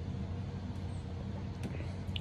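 A steady low background hum, with a couple of faint clicks.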